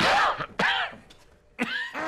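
A man coughing hard, two harsh coughs in quick succession, then another burst of coughing near the end.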